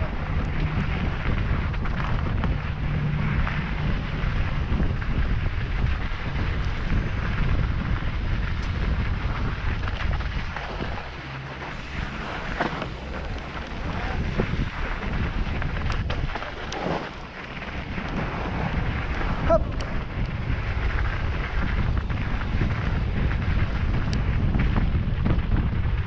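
Wind buffeting the microphone of a camera on a downhill mountain bike riding fast down a dirt trail, with the steady rumble of the tyres and scattered rattles and knocks from the bike over bumps; the loudest knock comes about three quarters of the way through.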